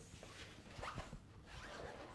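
Faint rustling with a few soft, short clicks scattered through it.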